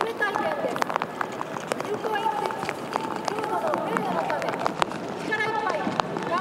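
A person's voice reciting the athletes' oath through a microphone, with scattered sharp clicks.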